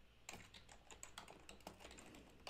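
Faint typing on a computer keyboard: a quick, irregular run of keystrokes entering text.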